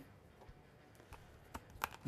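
Quiet room tone with a few small, sharp clicks in the second half, the last one the loudest: a 12-gauge shell being handled and pressed into an AK-style shotgun magazine.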